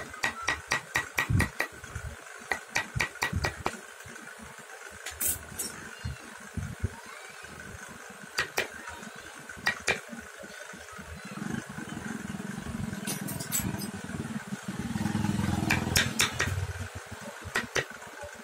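Hand chisel tapped into wood as a dome is carved: sharp clicks in a quick run of about four a second for the first few seconds, then scattered single strikes. From about eleven seconds in, a low engine sound rises, is loudest a few seconds later, and fades shortly before the end.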